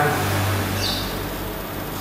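A low steady hum that fades out a little over a second in, over an even background hiss, in a pause between spoken phrases.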